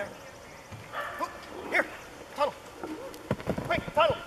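Border collie barking: short, sharp barks repeated every half second to a second. A quick series of sharp knocks comes near the end.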